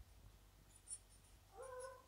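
Near silence with faint marker-on-paper sounds as a pen draws on a pad: a few tiny high ticks about a second in and one short squeal near the end.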